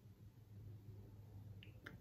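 Near silence: room tone with a faint steady low hum, and one small click just before the end.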